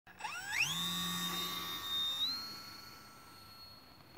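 Electric motor and propeller of an F5J RC glider spinning up at launch: a whine that quickly rises in pitch, holds steady at full power, steps slightly higher a little past two seconds in, then fades as the glider climbs away.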